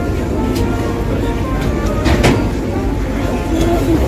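Steady low rumble of a vaporetto's engine at the landing stage, with passengers' voices over it and a sharp knock about two seconds in.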